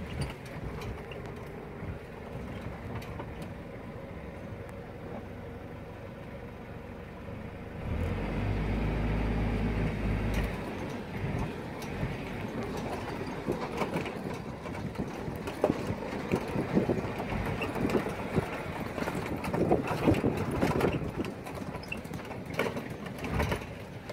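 Safari vehicle's engine running steadily. About eight seconds in it grows louder for a couple of seconds as the vehicle moves off, then it keeps running under irregular knocks and rattles as it drives over rough ground.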